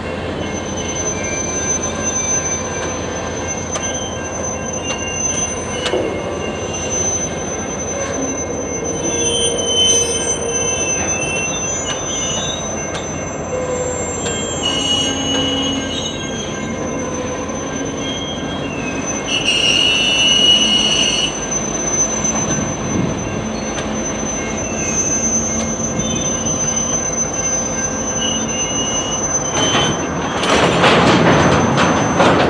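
Freight cars (covered hoppers) being shoved slowly across a grade crossing: steady rolling of wheels on rail with high-pitched wheel squeal. The squeal is loudest a little past the middle.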